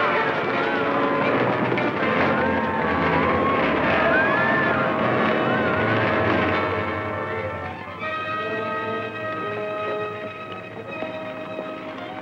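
Dramatic orchestral film score of held chords. Over the first half, voices shouting in alarm rise and fall over the music.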